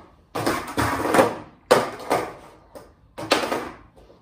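Skateboard tail struck down hard against a wooden floor: about four sharp wooden knocks, each dying away over half a second or so. This is the pop, the snap of the tail on the ground that makes the board spring up.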